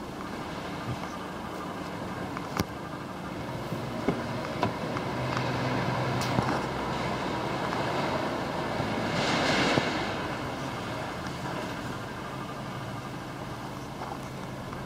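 A vehicle going past, its noise swelling to a peak about nine to ten seconds in and then fading, over a steady low hum. A few sharp clicks and knocks come from handling around the car's seats and door.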